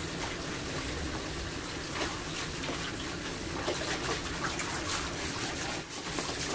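Steady spray of water from a handheld shower head, running over a dog's coat and splashing into the tub as the dog is washed.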